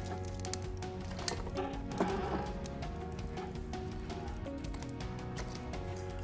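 Soft background music, with a couple of light knocks about one and two seconds in as split logs are laid on the fire in a wood stove's firebox.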